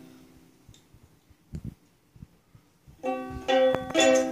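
Ukulele strings ringing out and fading, then a quiet stretch with a couple of soft knocks, before the ukulele is strummed again with several quick, loud strokes about three seconds in.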